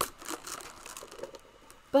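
Handling noise from a small toy accordion: a sharp click at the start, then light crinkling and rustling with a few faint ticks that die away after about a second. No reed notes sound.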